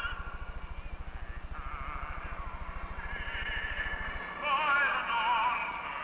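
A high voice singing a slow melody of long held notes with a heavy vibrato, over a low steady hum that stops about four seconds in.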